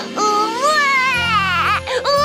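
A cartoon chick character, voiced in a childlike voice, wailing in tears: one long cry that rises and then falls in pitch, over background music.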